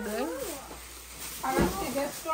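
A voice making a drawn-out sound that slides up and down in pitch, then a short rustle as plastic shopping bags are handled during unpacking.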